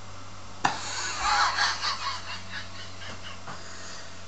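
A man laughing breathily, starting suddenly a little over half a second in and trailing off over about two seconds, over a steady low hum and hiss.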